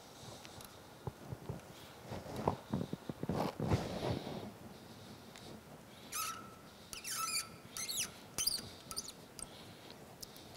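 A 6-32 tap turned by hand in a T-handle tap wrench, cutting a thread into a brass tube: faint scraping clicks through the first half, then several short squeaks as the tap turns in the second half.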